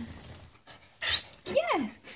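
Samoyed panting close to the microphone, with a short rising-and-falling whine near the end.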